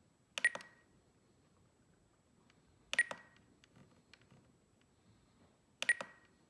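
Spektrum DX9 transmitter beeping as its roller is turned and pressed to set expo: three short beeps, each with a click, about two and a half to three seconds apart, with faint ticks from the roller between them.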